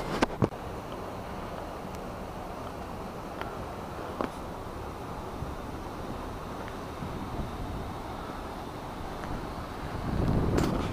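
Steady rushing noise of sewage-plant aeration tanks, their surfaces churning with air bubbling up from below, mixed with wind on the microphone. A couple of sharp clicks right at the start.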